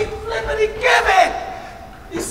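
An actor's voice yelling without words: a long, high-pitched held cry, then a louder cry about a second in that falls in pitch, ringing in a large hall.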